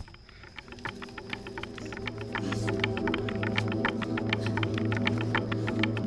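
Background score: a sustained low drone chord under a fast, steady clicking percussion, swelling in loudness.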